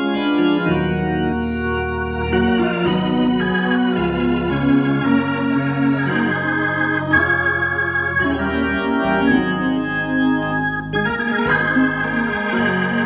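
Organ playing a gospel instrumental: full sustained chords over a bass line, the chords changing every couple of seconds at a steady volume.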